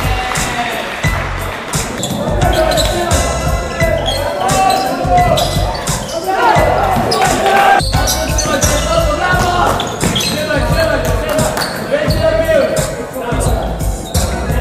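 Hip-hop beat playing, with a heavy, regular kick drum under a melodic line.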